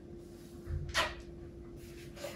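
Quiet handling sounds of cleaning a tiled bathroom wall: a soft bump and a short swish about a second in, over a faint steady hum.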